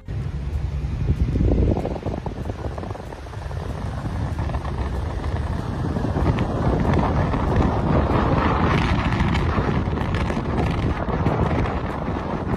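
Wind rumbling over the microphone together with road and traffic noise, recorded from a moving vehicle. The noise swells a little louder about halfway through.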